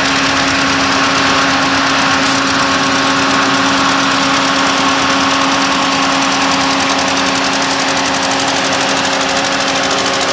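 Engines of a slow-moving column of tractors and trucks running steadily, a continuous drone without pauses.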